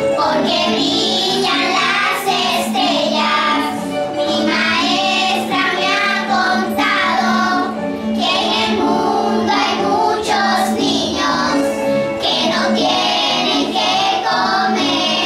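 A choir of young children singing a song together.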